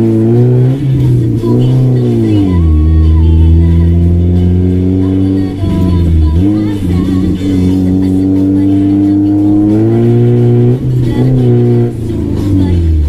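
Honda Civic engine and exhaust pulling under acceleration from inside the cabin. The pitch climbs, then drops back several times as the gears change, and music plays over it.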